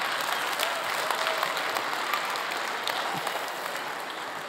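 Congregation applauding, a steady patter of many hands that slowly fades, with a few scattered voices mixed in.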